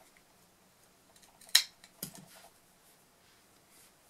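Scissors snipping through a peacock feather's quill: one sharp snip about a second and a half in, followed by a fainter click.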